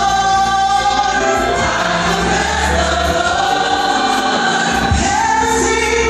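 Live gospel singing through the church's loudspeakers: a woman leads into a microphone with choir voices behind her, over sustained low bass notes.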